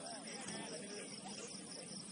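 Crickets chirping in a steady, high, evenly pulsing trill, with faint distant shouts from players early on.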